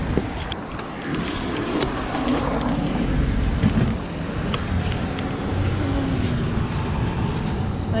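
Steady outdoor road-traffic noise with a low rumble, with faint voices and a few small clicks in the background.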